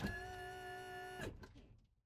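A steady pitched tone with several overtones holds for about a second and a quarter, then fades out.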